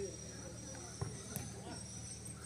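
Faint open-air ambience of a football pitch: distant voices of players calling, over a steady high-pitched insect drone, with a single short knock about a second in.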